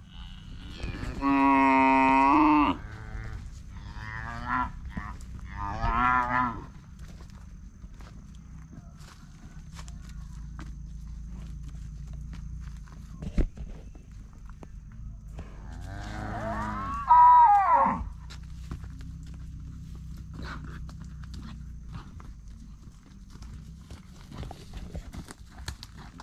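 Cattle mooing: a long loud moo about a second in, a few shorter, weaker moos around four to six seconds, and another loud moo, rising then falling in pitch, about sixteen seconds in.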